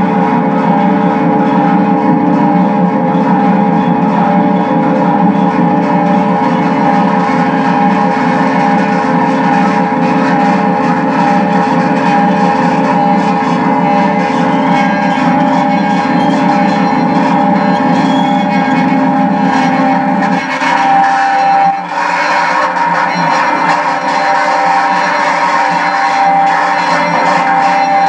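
Experimental noise music from an electric guitar laid flat and run through effects pedals: a dense, loud drone with several steady held tones layered over a noisy wash. About 20 seconds in the low end drops away, with a brief dip just after.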